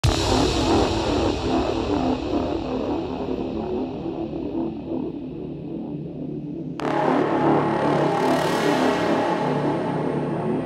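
Full-on psytrance track opening on a busy synth and bass pattern. Its treble gradually closes off, then snaps fully open about seven seconds in. A bright whoosh of noise sweeps through about a second later.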